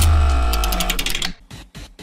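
A short electronic music sting marking a segment transition: a deep bass hit under a held chord with rapid ticking, fading out over about a second and a half, followed by a few faint clicks.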